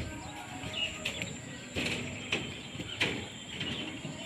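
Faint outdoor ambience with scattered soft bird chirps and a few light clicks or taps, over a thin steady high-pitched whine.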